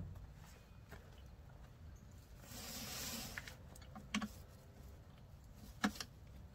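Pressure-washer hose fittings and wand being handled with the machine off: a brief soft hiss about two and a half seconds in, a light knock about four seconds in and a sharp click near the end.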